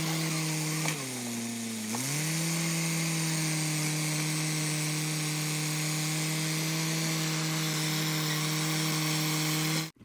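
Caterpillar D5 bulldozer's diesel engine running at high revs. About a second in, its pitch drops and it goes a little quieter, then it comes back up after a second. It cuts off suddenly near the end.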